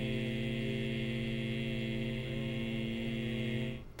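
A man's voice holding one steady, low-pitched vowel, the sustained phonation used during a laryngeal stroboscopy exam; it stops just before the end.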